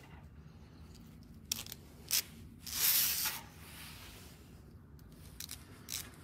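Thin steel wire rope handled and threaded through a small metal cable lock: a few light clicks and a short scraping rustle about halfway through.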